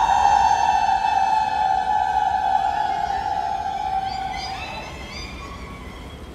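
Several women's voices holding one long high sung note together, steady for about four seconds and then trailing off.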